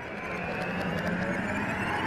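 Swelling whoosh sound effect of a video studio's animated logo intro, growing steadily louder as it builds toward the logo hit.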